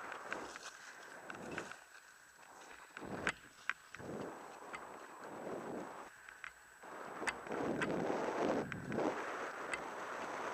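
Wind buffeting a helmet-mounted camera's microphone and edges scraping across packed snow during a downhill run. The noise swells and fades with the turns, with a few sharp clicks, and gets louder from about seven seconds in.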